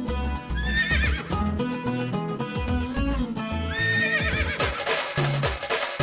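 Tamil film music with a steady drum beat. A horse's whinny is laid over it twice, about a second in and again about four seconds in.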